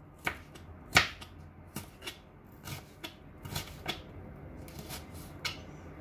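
Kitchen knife knocking on a cutting board as onion is sliced: about eight irregular, sharp knocks, the loudest about a second in.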